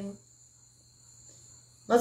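A woman's drawn-out hesitation 'é…' trails off just after the start. After that only a faint, steady, high-pitched background whine remains, with no pulsing.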